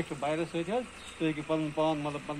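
A man speaking in short phrases with brief pauses between them.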